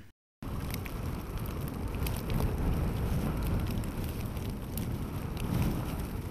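Blizzard wind blowing hard across the microphone, a steady rushing noise with a low rumble, starting a moment in, as a column of snowplough trucks drives through the blowing snow.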